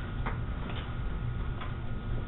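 Three soft computer-mouse clicks, spaced unevenly, over a steady low hum of room noise.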